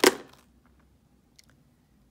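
Three dice thrown onto a tabletop, landing with a sharp clatter that rattles and dies away within about half a second, followed by a couple of faint ticks as they settle.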